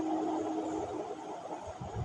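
Quiet room noise with a faint steady hum that stops a little under a second in, and a few soft low bumps near the end.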